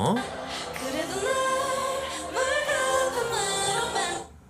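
Live concert recording of a K-pop girl group singing, with held notes and a rising, sliding phrase in the middle, over a pre-recorded backing vocal track (AR).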